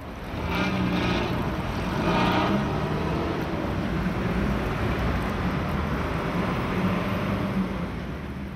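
Street traffic: a steady rumble of passing motor vehicles.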